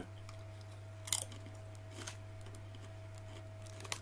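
A person chewing a mouthful of potato crisps, with one sharp crunch about a second in and a softer one about a second later, over a steady low electrical hum.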